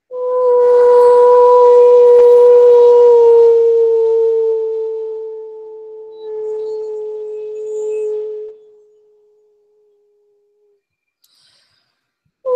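A woman's voice toning: one long wordless held note with a slight dip in pitch partway. It swells again and then fades out about nine seconds in.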